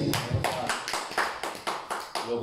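Hand clapping: quick, irregular claps, applause for a song that has just ended.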